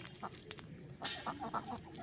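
A chicken clucking in a quick run of short notes about halfway through, over light clicks and rustling.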